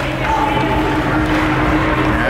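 Ice hockey game sound: indistinct voices of players and spectators calling out, over the scrape of skates on the ice.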